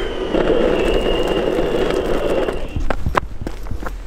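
Boosted electric skateboard rolling over asphalt, its wheels and a thin high motor whine running steadily. The rolling and whine stop about two and a half seconds in, followed by a few sharp clicks and knocks.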